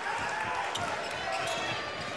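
Basketball being dribbled on a hardwood court, a few bounces over steady arena crowd noise.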